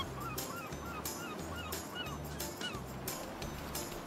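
Seagulls calling in short, quick cries, about three a second, over a soft background wash of beach ambience.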